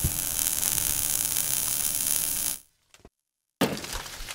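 Sound effects for an animated logo: a steady electric buzz with static hiss, as of a flickering neon sign, which fades out about two and a half seconds in. After a short silence, a sudden hit with crackling comes in near the end.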